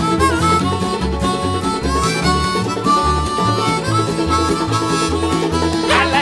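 Bluegrass band playing an instrumental break: a harmonica carries a bending melody over banjo, acoustic guitar and an upright bass keeping a steady pulse.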